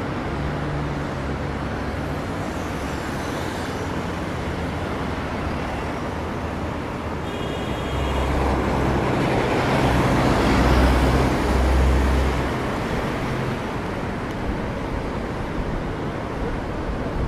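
Road traffic on a city street: engines and tyres of passing cars and vans. It swells for a few seconds in the middle as a car goes by close.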